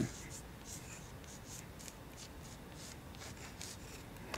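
Chalk writing on a blackboard: a run of short, faint scratching strokes, one after another, as letters are chalked out.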